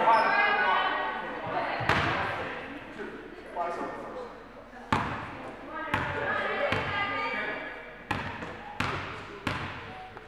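A basketball bouncing on a hardwood gym floor, about seven bounces that echo through a large hall and come closer together near the end, with voices of players and spectators.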